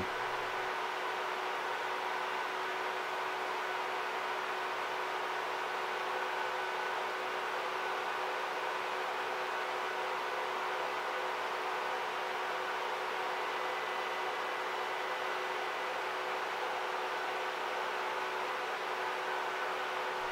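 Steady hum of a video projector's cooling fan: an even hiss with a few steady tones that does not change.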